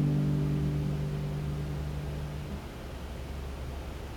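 The closing chord of the song on a classical guitar, ringing on and slowly dying away; its low notes are cut off suddenly about two and a half seconds in, leaving faint hiss.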